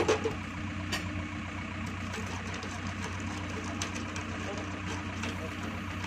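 JCB backhoe loader's diesel engine idling steadily, holding a suspended concrete well ring, with a sharp click at the very start.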